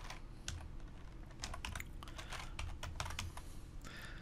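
Typing on a computer keyboard: a short run of key clicks, unevenly spaced.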